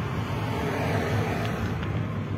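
Steady road and engine noise of a moving car, heard from inside the cabin.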